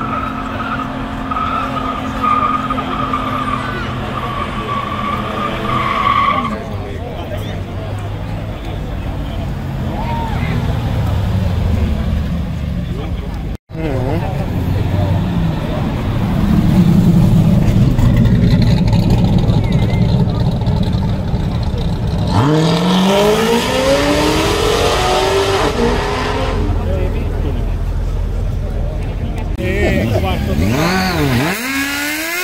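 Burnout: tyres squealing steadily over a revving car engine, the squeal stopping about six seconds in. Later a C5 Corvette's V8 rumbles low, then revs up in a sharp rising run about two-thirds of the way through.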